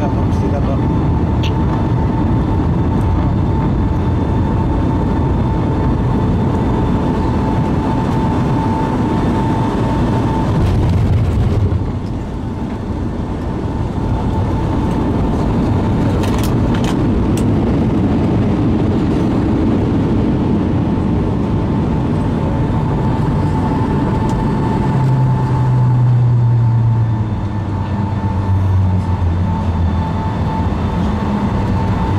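Cabin noise of a Boeing 757 landing, heard from a window seat over the wing: a loud, steady rumble of engines, airflow and wheels on the runway with a steady whine. The rumble drops suddenly about twelve seconds in as the jet slows. A low engine hum swells again near the end as it taxis.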